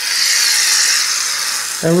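Aerosol can of shaving foam spraying, a steady hiss as the foam is dispensed.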